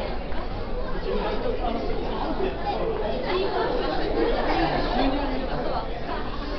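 Indistinct chatter of several people talking at once, with no clear words standing out.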